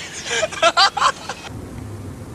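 Loud voices talking for about a second and a half. Then comes a low, steady rumble of a car's engine and road noise, heard from inside the cabin.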